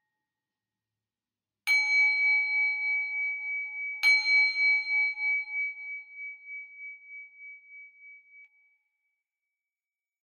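A small Buddhist bowl bell struck twice, the first strike nearly two seconds in and the second about two seconds later, each ringing in a clear high tone that wavers as it slowly fades out over several seconds.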